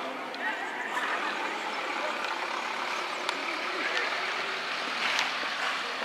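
Outdoor football-pitch ambience: a steady background hiss with faint, distant voices of players and spectators, and a few light knocks.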